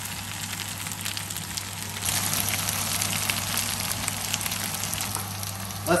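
Chicken Manchurian sizzling in a frying pan, a steady crackling that grows louder about two seconds in, with a low steady hum underneath.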